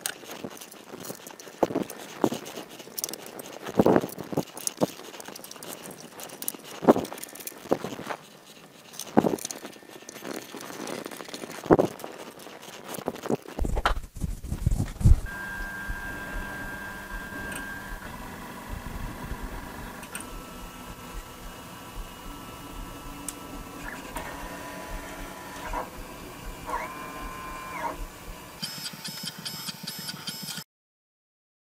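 Scattered clicks and knocks of hands handling 3D printer parts and cables. Then, about halfway through, the Maker Select Plus 3D printer's stepper motors start running a print: steady whining tones that jump to new pitches as the head and bed change moves.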